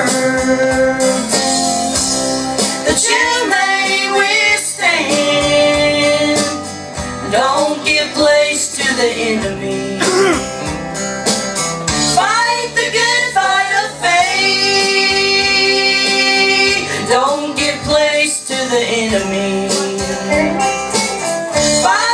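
A woman singing a country gospel song through a microphone and PA, with guitar accompaniment; long held notes that waver in pitch.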